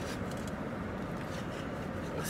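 Steady low hum inside a car's cabin, with a few faint scratchy rustles from handling food.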